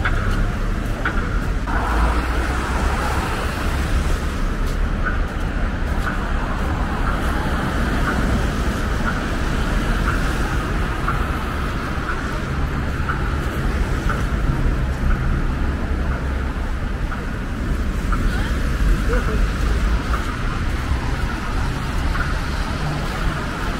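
City street traffic: cars driving past on a wet, slushy avenue, a steady low roadway rumble with tyre hiss.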